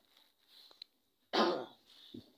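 A single short cough from a person, about a second and a half in, sudden and quickly fading, against a quiet room.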